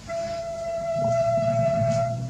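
A single steady tone with a few overtones, held for nearly two seconds over a low rumble.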